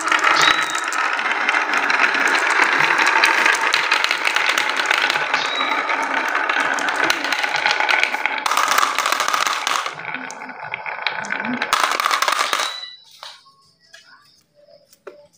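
Glass marbles rolling and clattering down the zigzag grooves of a wooden marble slope, clicking against the wood and each other as they pile into a toy truck's plastic bin. The continuous clatter stops suddenly shortly before the end.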